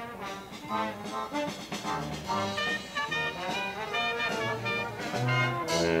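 A brass jazz band playing live, with horns carrying the tune over a tuba's low bass notes, growing louder toward the end.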